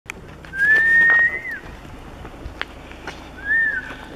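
A person whistling twice: a long, slightly rising note that falls off at the end, then a short arched note. It is a falconer's recall whistle, calling the hawk back to the glove.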